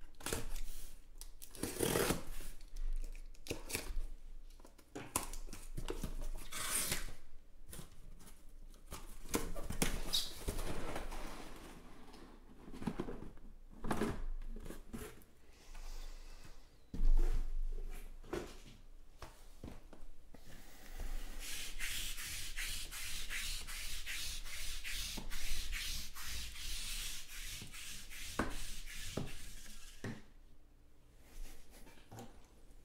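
A utility knife slitting the packing tape on a cardboard case, then cardboard rustling and sealed boxes of trading cards being pulled out and set down with knocks, the loudest about seventeen seconds in. Near the end, a long run of fast scratchy rubbing as the boxes slide against each other and the cardboard.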